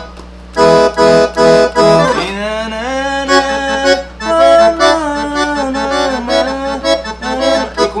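Roland V-Accordion (digital accordion) playing a forró phrase: four short, evenly spaced chord stabs, then a flowing melody line with held notes from about two seconds in.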